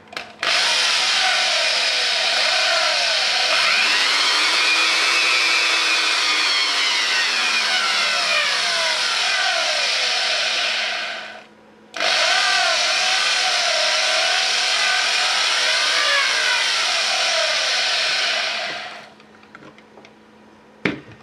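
Corded electric drill with a brushed (commutator) motor running through a homemade speed regulator. Its pitch rises and then falls as the speed is turned up and down. It stops about eleven seconds in, starts again a second later with its speed wavering, and winds down near the end.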